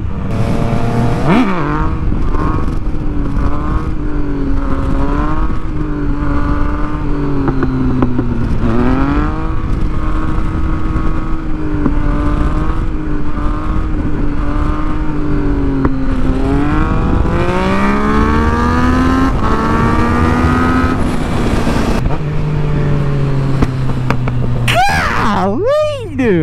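A 2017 Yamaha FZ-09's 847 cc inline-three engine running under way at road speed, with wind rushing over the camera. The engine note holds steady with two brief dips and recoveries, climbs through the second half, then falls to a lower note. A quick rise and fall in pitch comes near the end.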